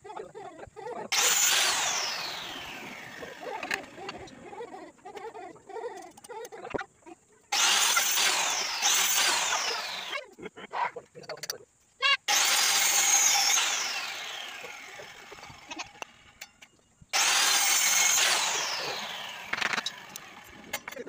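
Small handheld electric circular saw run in four short bursts, each a loud high whine that falls in pitch over a couple of seconds as the blade slows.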